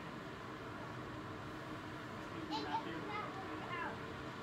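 Distant kids' voices calling out and chattering, words unclear, starting about two and a half seconds in, over steady background noise.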